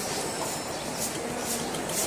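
Steady background noise of busy street traffic, a low rumble with clatter.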